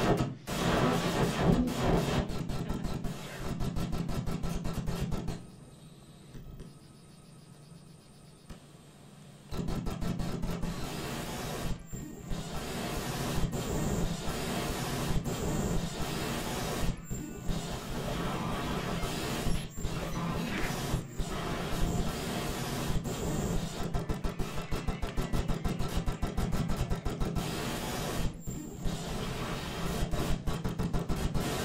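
Raw hard-drive data fed straight to a sound card and played as audio: dense, glitchy noise full of rapid clicks over a low buzz, its texture shifting with the structure of the files being read. It drops much quieter for a few seconds about six seconds in, then comes back loud at about ten seconds.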